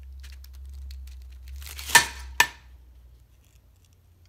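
Large kitchen knife forced into a whole red cabbage on a plastic cutting board: faint crackling of the leaves, then a louder crunch ending in a sharp crack about two seconds in, and a second short crack about half a second later.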